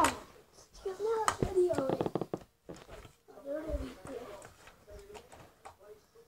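A child's voice calling out in wordless bursts, with a sharp knock right at the start and another about a second and a half in as a kick scooter lands on a carpeted floor.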